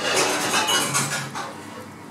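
A knife blade scraping and cutting along the bones of a dab as a fillet is lifted, a scratchy rasp that fades away in the second half.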